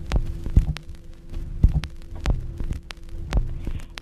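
Instrumental backing of a song between sung lines: a steady low hum-like tone under low beats, about two a second, with sharp clicks.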